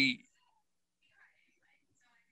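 A man's voice trailing off on a word in the first quarter second, then near silence: a pause in speech.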